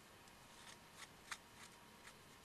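A few faint, short scrapes and paper rustles as a small hand tool scrapes old paste residue off the spine fold of a disbound paper book signature.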